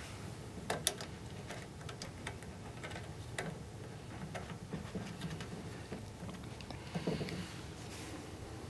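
Faint, scattered clicks from the rotary switch knobs of an Eico 1171 resistance decade box being turned by hand, with a somewhat fuller handling knock about seven seconds in.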